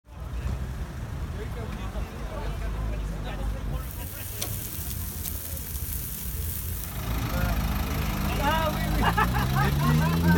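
A low rumble of traffic and car engines runs throughout with people talking. About four seconds in, sausages sizzling on a barbecue grill add a bright hiss for about three seconds. After that, voices close by are heard over a car engine that begins to rise in pitch near the end.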